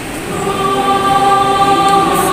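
Youth mixed choir singing in parts, coming in on a held chord about half a second in and sustaining it.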